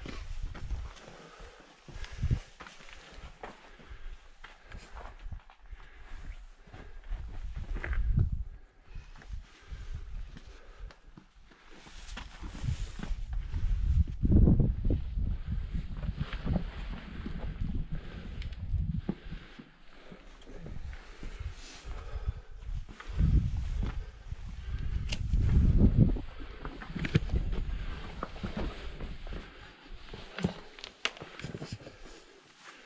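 Boots and hands scrambling over rough rock, with irregular scuffs, scrapes and small clicks of footfalls. A low rumble swells up twice, about midway and again later.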